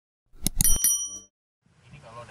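Subscribe-button sound effect: a few quick clicks and a bright, bell-like ding about half a second in, ringing out within a second.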